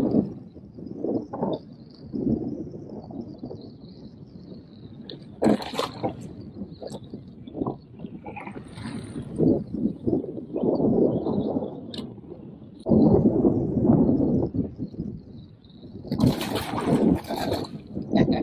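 Seawater sloshing and splashing against the side of a kayak in uneven swells, with a few sharp knocks and clicks.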